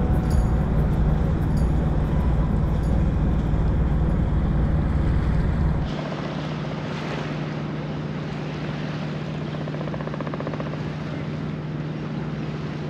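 Boat engine running steadily with a low hum, while wind rumbles on the microphone. About halfway through the wind rumble cuts off abruptly, leaving a quieter, even engine drone.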